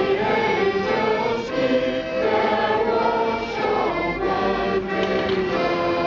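A children's school choir singing together, many young voices holding sustained notes in a continuous song.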